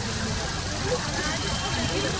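Distant voices of people talking, faint and indistinct, over a steady low background rumble.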